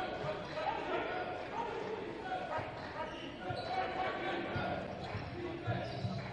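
A basketball dribbled on a hardwood court, giving repeated low thumps that echo around a near-empty gym, with scattered voices calling out over it.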